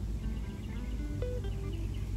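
Quiet background music with soft held notes over a steady low hum.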